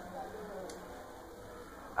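Quiet background hiss with a single faint click a little under a second in, from the moped's handlebar turn-signal switch being flicked off.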